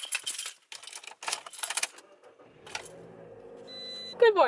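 A bunch of car keys jangling and clicking as the key goes into a Toyota's ignition, in quick metallic rattles over the first two to three seconds. A steady low hum sets in about two and a half seconds in, with a short high tone near the end.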